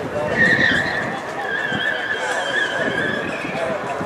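Ford Fiesta ST's tyres squealing through a hard cornering turn, one long wavering squeal that starts just after the beginning and fades out near the end, with the car's engine running under load beneath it.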